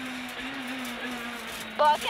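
Honda Civic Type-R R3 rally car's 2.0-litre four-cylinder engine running, heard from inside the cabin. It holds a steady note with a brief wobble in pitch about half a second in, over road and tyre noise.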